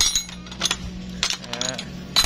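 Rusty steel hand tools, mostly wrenches and pliers, clinking against one another as they are shifted around in a tray. It is a handful of sharp metallic clinks, each with a short ring.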